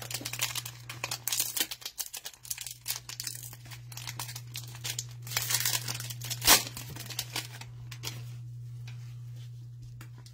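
Cellophane wrapper of a trading-card cello pack being torn open and crinkled by hand: a dense crackle of plastic film, with one sharp loud rip about six and a half seconds in. A steady low hum runs underneath.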